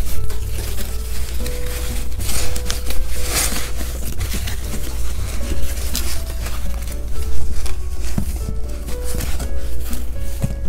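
Background music with held notes, over rustling and crinkling as a sheet of white packing material is handled and stuffed into a cardboard box; the rustling is loudest around two and a half to three and a half seconds in.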